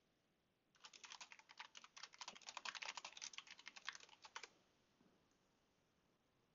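Computer keyboard typing: a faint, quick run of key clicks that starts about a second in and stops after about three and a half seconds.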